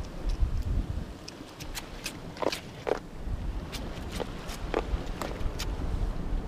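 Wind rumbling on the microphone, with irregular sharp clicks and taps scattered through it.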